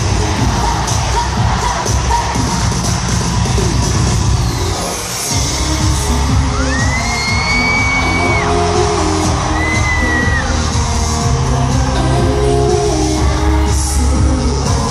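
Live K-pop concert recorded from the arena audience: loud amplified pop music with a heavy bass beat, singing and a cheering crowd. The music drops out briefly about five seconds in, and two long high-pitched tones ring out in the middle.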